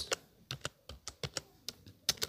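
Typing on a keyboard: a quick, uneven run of key clicks as a word is typed.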